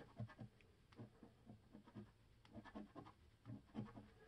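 A coin scraping the coating off a scratch-off lottery ticket in faint, short, irregular strokes.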